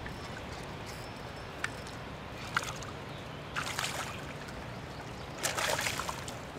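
A hooked fish splashing at the surface as it is reeled in to the bank, over a steady wash of moving water; the loudest splashes come a little past the middle and again near the end.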